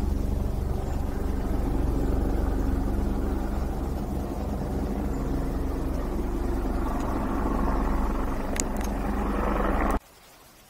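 A loud, steady low rumble with a hum, cutting off abruptly at the end, with a few sharp clicks shortly before.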